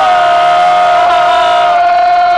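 A man's loud, long yell held on one steady pitch, a wrestler's drawn-out "Hooo!" battle cry, over a cheering crowd.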